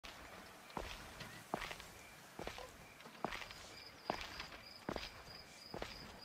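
Slow, evenly spaced footsteps, about one step every 0.8 seconds, with a faint high chirp repeating behind them.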